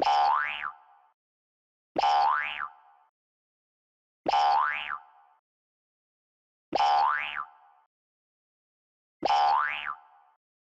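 A cartoon 'boing' sound effect with a quickly rising pitch, played five times about two and a half seconds apart, each lasting under a second. It marks each new princess picture popping onto the shelf.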